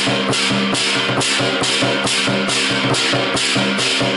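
Lion dance drumming: a large Chinese lion drum beaten with sticks, played with hand cymbals crashing about twice a second and a gong ringing under them.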